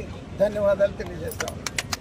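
A man's voice briefly, then a rapid run of sharp clicks starting about a second and a half in.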